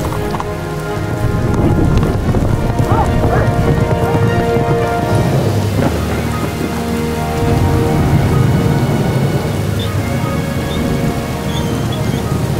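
Heavy rain falling steadily with low rolling thunder, under a sustained dramatic music score.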